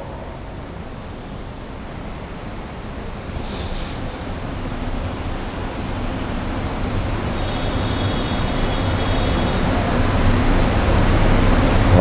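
Steady hiss with a low hum, the room tone of a large mosque hall full of seated worshippers, growing gradually louder with no voices standing out.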